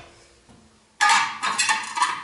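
Steel four-way lug wrench clanking and scraping against metal as it is worked on a car's wheel bolts, starting suddenly about a second in.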